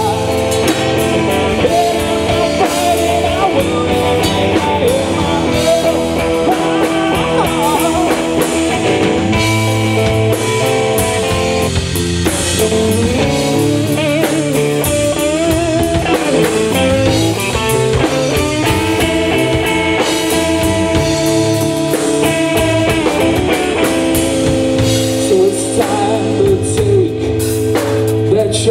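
Live blues-rock trio playing an instrumental passage: electric guitar lines with bent notes over electric bass and a drum kit, heard through the band's amplifiers.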